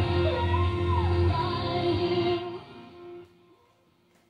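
A song with singing and guitar playing through an AWA Dimensional Sound B96Z radiogram (around 1970) with clear bass. It drops away suddenly about two and a half seconds in and fades to near silence by the end.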